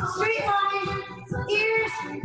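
Music with a high sung voice carrying a wavering melody over a steady beat.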